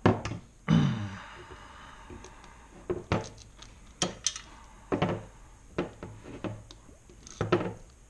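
Irregular knocks and clatter of a metal engine-computer case and its loose metal cover plate being handled and set down on a desk, with the two loudest knocks right at the start and under a second in.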